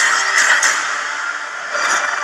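Film trailer soundtrack played aloud in a small room: a dense, loud rush of action sound effects with no dialogue, with a few sharp hits in the first second, easing off slightly toward the end.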